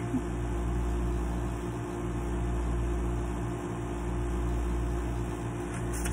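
Steady low mechanical hum with a few constant tones, dipping slightly about every two seconds.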